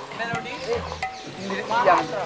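Speech: a person's voice, fainter in the first half and louder near the end, with a brief click about a third of a second in.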